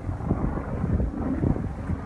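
Wind buffeting the microphone: a low, uneven noise that rises and falls, with no engine or other distinct sound.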